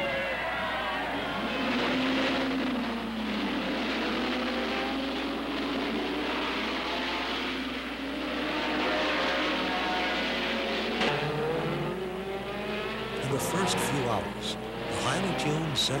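Several racing car engines running at speed, Ford GT40s among them, their pitch rising and falling as they rev and pass. Near the end there is a run of sharp clicks.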